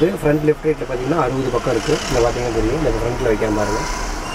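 Vocal music with a repeating, chant-like voice played loud through a 5.1 home theatre amplifier and its speakers, the amplifier driven near its maximum output.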